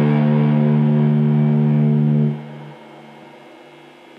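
A sustained, distorted electric guitar chord held in a raw black metal recording, which cuts off abruptly a little over two seconds in. It leaves only a faint, fading ring behind.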